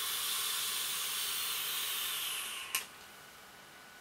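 Sub-ohm vape drag at 0.25 ohms and 39 watts: the dripping atomizer's coil sizzles and air hisses through it in one long, steady draw. The draw stops with a short click almost three seconds in.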